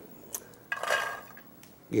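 Kitchen utensil clinking against a dish, then a short scraping rustle as chopped celery is pushed into a metal pot.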